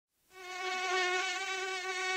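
A mosquito's high-pitched whine fades in during the first half-second, then holds on with its pitch wavering slightly as it flies about.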